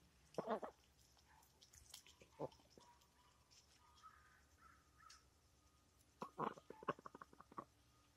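White Pekin ducks feeding, heard faintly. One short duck call comes about half a second in and another at about two and a half seconds, then a quick run of short calls comes near the end.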